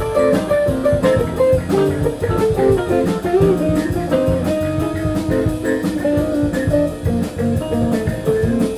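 Live band playing an instrumental passage: electric guitar picking a busy line of quick single notes over bass guitar and a drum kit.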